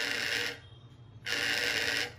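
The vibration alert of a xóc đĩa cheat detector buzzes twice, each buzz lasting under a second. Two buzzes signal that it reads two of the four counters as each colour, an even result.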